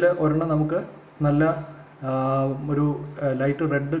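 A man speaking (Malayalam narration), with a thin, high-pitched trill in the background that comes and goes.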